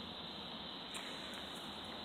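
Steady, faint outdoor background noise with no distinct events, from traffic going by.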